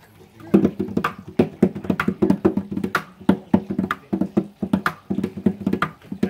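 Hand drum played with bare hands: a quick, uneven rhythm of sharp pitched strikes, several a second, starting about half a second in.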